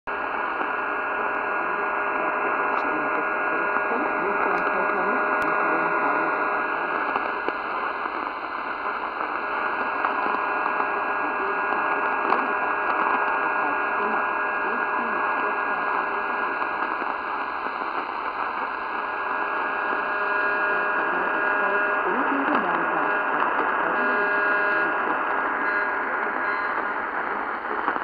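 Tecsun PL-450 portable radio tuned to about 209 kHz on longwave, playing a weak, noisy AM signal through its speaker: steady hiss with several faint steady whistle tones running through it.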